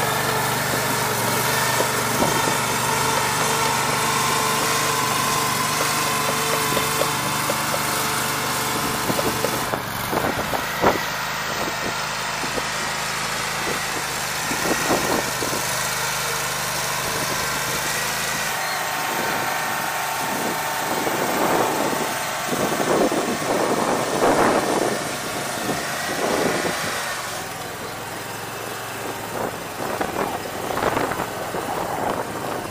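Engine of a 115 Platypus tracked mobile home mover running steadily, its pitch shifting a couple of times, with a series of short knocks and rattles in the second half.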